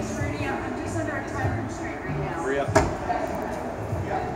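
Indistinct background voices, with one sharp knock nearly three seconds in.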